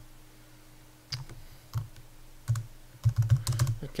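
Computer keyboard being typed on: a few separate key presses, then a quick run of keystrokes near the end.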